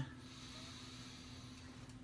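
A man drawing a slow, deep breath in through his nose, a faint steady hiss of air, over a low room hum.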